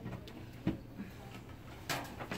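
A few light clicks and knocks of an eye-test instrument being handled and plugged in: one about a third of the way in, a louder one near the end.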